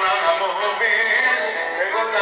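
Live Greek folk music: a male singer over violin accompaniment, played steadily on. It sounds thin, with almost no bass.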